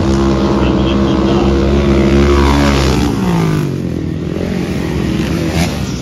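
A flat-track racing motorcycle engine running hard at high revs close by. Its note holds steady for about three seconds, then drops in pitch as the bike goes past and on into the turn.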